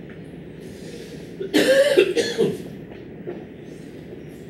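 A person coughing twice, in two short bursts about a second and a half in, over a steady low background hum.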